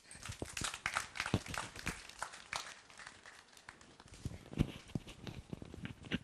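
Small audience applauding, the clapping strongest in the first two seconds and thinning out after.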